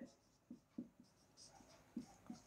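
Faint marker strokes on a whiteboard: a few short, quiet scratches and squeaks as a word is written.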